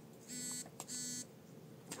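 Two short electronic beeps, about half a second apart, each lasting roughly a third of a second.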